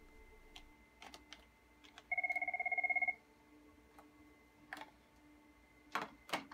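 Cisco 7965 IP desk phone ringing for an incoming call: one rapidly pulsing two-pitch ring burst about a second long, a couple of seconds in, with a few soft clicks around it.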